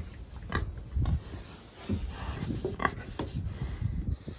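Pigs grunting close up, a string of short, irregular grunts.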